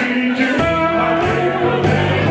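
Live rock and roll band playing, with a male singer's long held notes over electric guitars, bass guitar and drums. The bass and drums come in heavier about half a second in.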